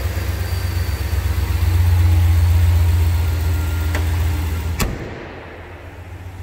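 Ram 1500's 5.7-litre Hemi V8 idling with a steady low hum. About five seconds in there is a sharp click and the engine sound drops away.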